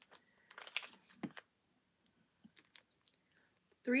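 Faint rustling and a few light clicks of hands handling a knitted sock tube and a tape measure while measuring it.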